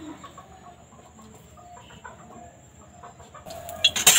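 Chickens clucking faintly in short, scattered calls. Near the end, a hiss begins to rise as cut potatoes start going into hot mustard oil in the kadai.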